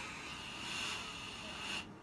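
Gas hissing out of the Hamilton T1 ventilator's open breathing circuit at the flow sensor during its flow-sensor calibration: a steady hiss with a faint whistle in it that cuts off suddenly near the end.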